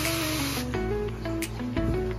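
Handheld pressure sprayer misting water onto a seed-germination tray, a steady hiss that stops less than a second in. Background music plays throughout.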